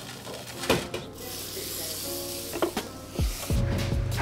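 Liquid splashing out of an open drink container as it is shaken without its lid: a click, then a spray-like rush of spattering liquid lasting about two seconds, followed by a couple of low thumps near the end.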